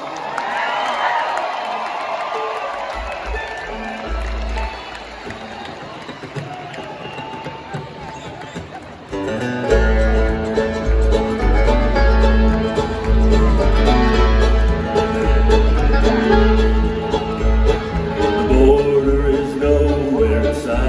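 Live bluegrass band with banjo, acoustic guitar, fiddle, mandolin and upright bass. It opens quietly with a few low upright bass notes, and about nine and a half seconds in the full band comes in loudly with an instrumental intro.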